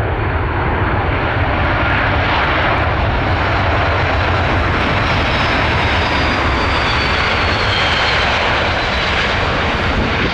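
Aer Lingus Airbus A330-300's twin turbofan engines running loud and steady as the airliner rolls along the runway, with a faint high whine that slides down in pitch in the second half.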